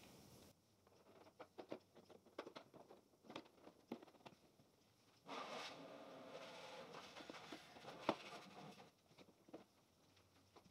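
Faint handling sounds: a few small clicks in the first half, then a soft rustle lasting a few seconds with one sharper click near the end, as a tinted plastic motorcycle windscreen is taken from its plastic bag and fitted against the front fairing.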